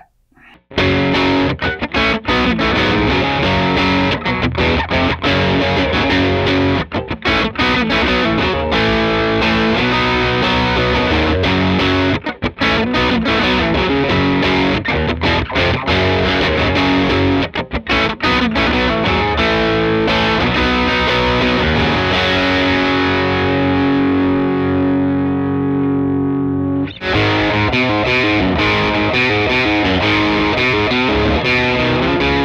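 Electric guitar (Stratocaster) played through the SonicTone Royal Crown 30, a 30-watt EL84 tube amp, on channel 2 in its cool setting with the gain around seven: a medium overdrive tone. Riffs and chords start about a second in. Later a chord is left to ring and fade for several seconds before the playing picks up again near the end.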